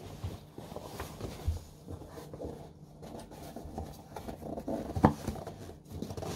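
Rubbery reusable overshoes being stretched and slid over work boots: soft rubbing and rustling, with a few light knocks and one sharper knock about five seconds in.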